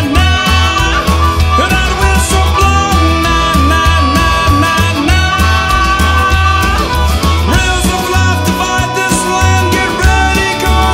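A rock band playing an instrumental passage: a pulsing bass line under long held lead notes, with no singing.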